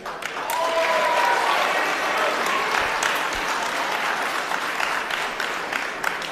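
Audience of students applauding in an auditorium, with a brief voice calling out about half a second in; the clapping thins toward the end.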